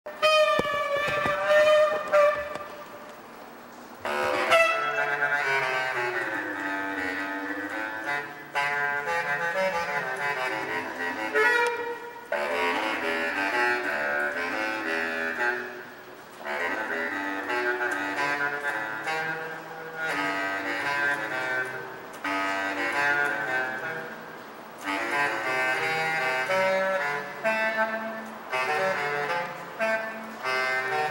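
Bass clarinet playing a jazzy melodic line in phrases a few seconds long, with brief breaks between them, moving between low notes and higher ones.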